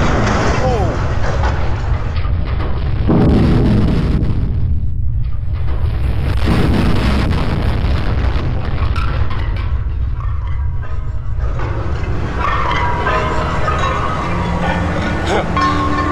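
Thirty-metre steel jacket legs of an offshore gas platform crashing over onto an earth bed, a heavy low rumble of collapsing steel. People's voices are heard at the start and near the end, and music comes in during the second half.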